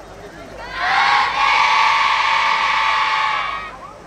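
Yosakoi dancers, a large group of young voices, shouting one long held call in unison, starting about a second in and fading out just before the end.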